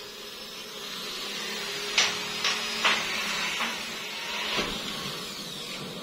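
A steady mechanical hum like a small motor running, with a few sharp knocks between about two and five seconds in.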